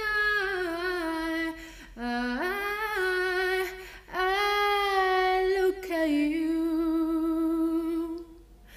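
A woman's solo voice singing unaccompanied, in four phrases of long held notes with vibrato. The second phrase starts low and sweeps upward.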